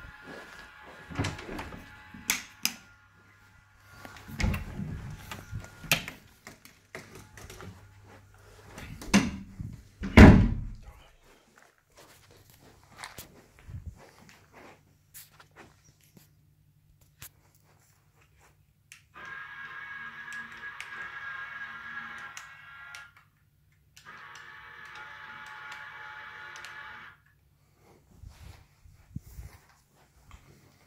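A series of knocks and thumps in a small room, the loudest about ten seconds in. Later come two stretches of a steady sound made of several held tones, each a few seconds long.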